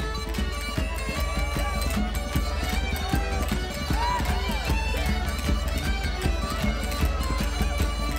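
Lively Irish traditional dance tune played by a folk band, with pipes carrying the melody over a steady, driving beat. Party crowd voices run underneath.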